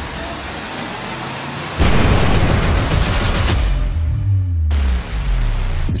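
Trailer score and sound design: a noisy bed, then a sudden loud hit about two seconds in, followed by a dense rush with fast regular pulses and low bass notes that cuts off abruptly near the five-second mark before starting again.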